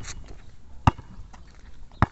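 A basketball being dribbled on rough outdoor pavement: two sharp bounces about a second apart, one about a second in and one at the end.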